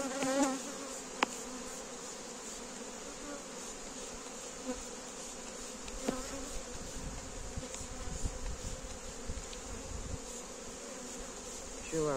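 Honeybees from an opened hive buzzing in a steady hum around the lifted frame and in the air, a calm colony. A single sharp click sounds about a second in.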